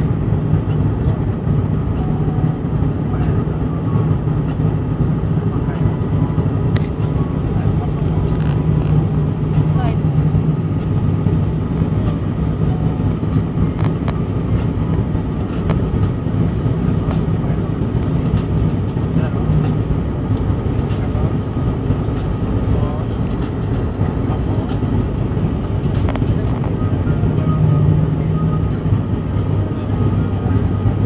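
Cabin noise of an ATR 72-500 turboprop descending to land: the steady drone of its propellers and engines, with a deep low hum.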